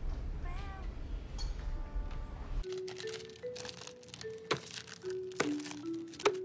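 Low rumbling ambience with a short wavering call, cut off about two and a half seconds in by soft film-score music: a slow melody of held notes, with a few sharp knocks.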